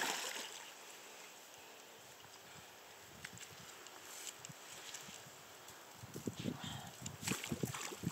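Quiet, steady water sound at a stream bank, then from about six seconds in, a run of short splashes and knocks at the water's edge.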